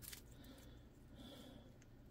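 Near silence: faint room tone, with two brief faint scrapes.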